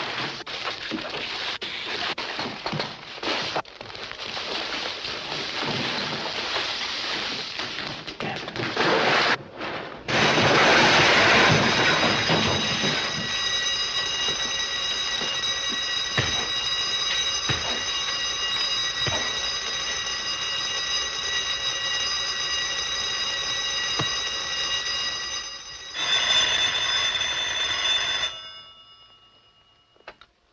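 Electric burglar-alarm bell ringing without a break at a drugstore with a smashed front window, starting about a third of the way in and cutting off near the end. Before it, a dense noisy stretch.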